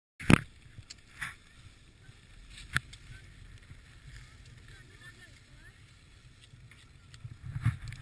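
Handling knocks on a pole-mounted GoPro camera: a sharp knock right at the start, then two lighter ones within the next few seconds, over a low steady rumble of wind on the microphone.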